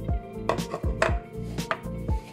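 Small plastic pots knocking and clacking against a tiled counter as they are handled and set down, a few sharp knocks over background music with a steady beat.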